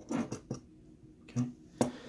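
A few short clicks and knocks of hard plastic and metal as the white plastic connector housing, unplugged from a Honeywell VR9205 gas valve, is handled over the valve body. The sharpest click comes near the end.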